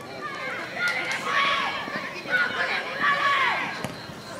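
Voices shouting and calling out across a football pitch, unclear and not close to the microphone.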